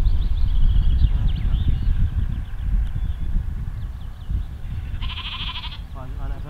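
Wind buffeting the microphone with a steady low rumble, strongest in the first couple of seconds. A sheep bleats once, a pulsing call of just under a second, near the end.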